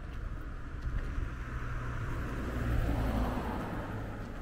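A car passing on the road, its engine and tyre noise swelling to a peak about three seconds in and then fading.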